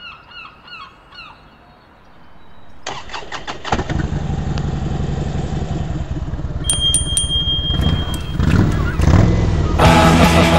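A bird calls several times in the first second or so. Then a motorcycle-like engine starts and runs steadily, growing louder, with three bright rings about seven seconds in, and rock music comes in at the very end.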